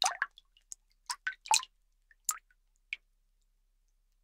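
An irregular scatter of short drip-like plinks and clicks, about ten in the first three seconds.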